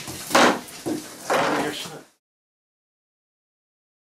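Two scraping, sliding sounds about a second apart: a long wooden baker's peel pushed across freshly baked simits. The sound cuts off suddenly about two seconds in.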